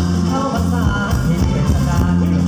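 Live band music played loud over a PA: drum kit, electric bass, guitar and keyboard with a singer, a heavy bass line and a steady beat.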